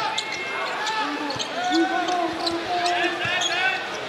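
A basketball being dribbled on a hardwood court, heard as scattered knocks, under the voices of players and the arena crowd.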